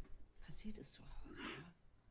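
Faint, hushed speech: quiet dialogue from a TV episode playing at low volume, a few short words with hissy s-sounds.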